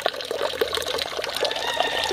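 A steady stream of water pouring from a filter's outlet pipe into a tank, splashing continuously on the water surface.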